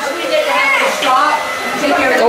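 Several people talking over one another in a kitchen, with a steady whirring noise underneath.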